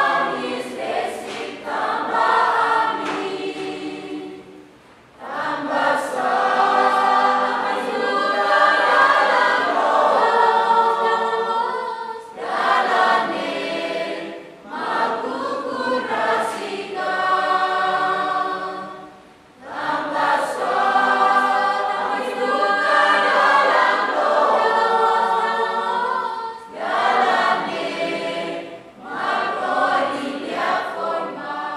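A choir singing, in long phrases with brief breaks between them.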